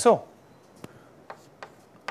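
Chalk writing on a chalkboard: a few light taps and scrapes as strokes are made, about three in the second half, after a short spoken word at the start.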